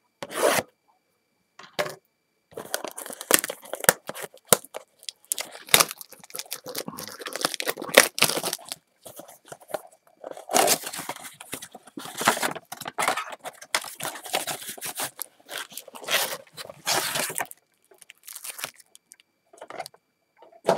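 Shrink wrap being cut and torn off a cardboard trading-card blaster box, then the box opened and its foil card packs pulled out: a run of irregular tearing, crinkling and rustling with short pauses.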